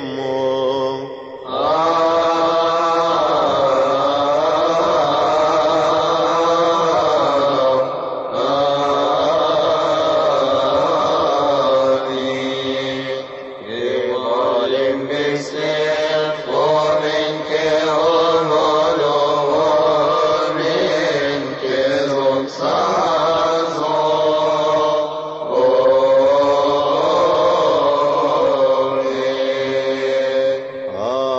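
Coptic liturgical chant: long, melismatic sung phrases whose held notes slide up and down, broken by a few short breaths between phrases.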